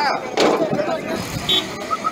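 Roadside din of people talking and vehicle traffic, with a loud noisy surge about half a second in. Three short high beeps sound near the end.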